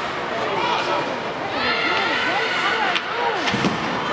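Several voices calling out and shouting over one another in an indoor ice hockey rink, with no clear words. Two sharp clacks of hockey sticks and puck come near the end.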